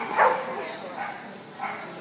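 A dog barking in short, sharp barks, the loudest just after the start and quieter ones later on.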